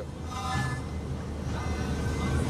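Music from a Smart car's factory stereo playing through the cabin speakers, with short held notes, over the steady low rumble of the engine and road noise inside the moving car.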